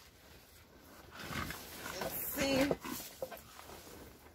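Dry, dead foliage and dry soil rustling and shifting as a large plastic plant pot is tilted over by hand. A brief vocal sound comes about two and a half seconds in.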